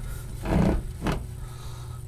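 Steady low mechanical hum of a laundry machine running in the background, with a short louder rush of noise a little after half a second in.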